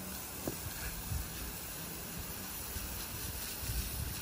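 Water spraying from a hose wand onto freshly set exposed-aggregate concrete, a steady hiss, washing off the surface cement paste to bare the stones. A few soft low bumps come through about a second in and near the end.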